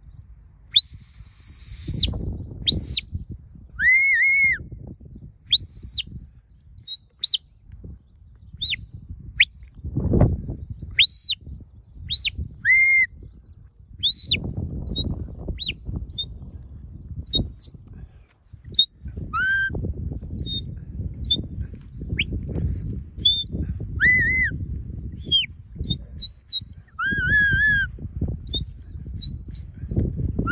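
Shepherd's whistle commands to a working sheepdog: a long series of short, sharp whistled notes, mostly high and arched, with a few lower warbling notes among them.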